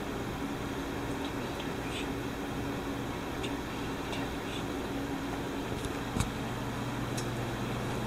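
Steady low electrical hum of a kitchen's room tone, with faint soft ticks from handling food on a plate. About six seconds in there is a sharp click, and after it the hum is deeper and steadier.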